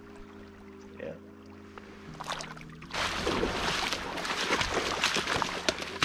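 Faint held musical chords, then from about three seconds in a louder hissing rush of river water with small splashes and knocks.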